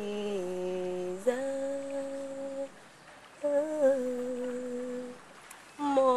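A woman's voice humming long, held wordless notes, each lasting a second or more, with short breaks between them and a quieter pause near the middle; the pitch steps up slightly after the first note.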